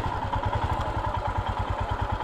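Motorcycle engine running at low speed as the bike creeps forward, with an even, rapid low pulsing from its exhaust.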